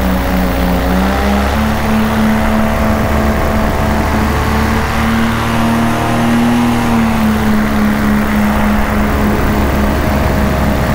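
Paramotor engine and propeller running steadily in flight, its pitch stepping up slightly about a second and a half in and rising a little again later.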